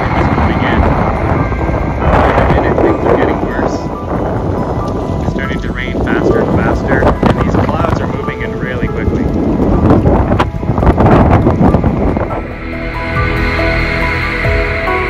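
Strong gusty wind buffeting the microphone in irregular surges ahead of an arriving thunderstorm. Background music takes over near the end.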